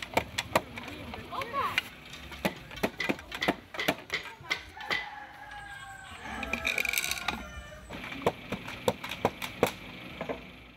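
Wooden parts of a traditional hand loom knocking and clacking irregularly, a few times a second, as a weaver works the weft in, with faint voices in the background.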